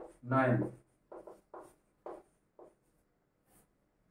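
Chalk writing on a blackboard: about five short separate strokes in quick succession, following a single spoken word.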